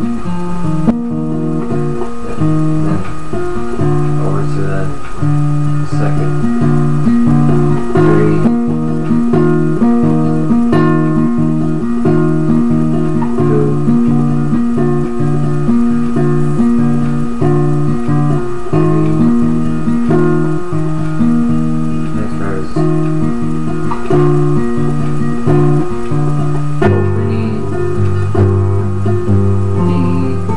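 Classical guitar played fingerstyle in a steady, repeating broken-chord pattern of plucked notes, with deeper bass notes coming in near the end.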